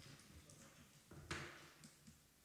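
Near silence: quiet room tone, with one brief faint noise a little past the middle.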